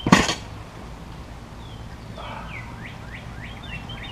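A short, loud thump right at the start as an item, likely the tire just named, is set down on the ground. Then small birds chirping, a series of short high notes repeated over and over.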